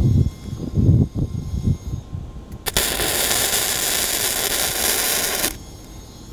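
Self-shielded flux-cored arc welding on a steel railing joint with a Lincoln Power MIG 210 MP. The arc strikes about three seconds in, crackles and sputters evenly for about three seconds, then stops suddenly. Before it, low rumbling wind buffets the microphone.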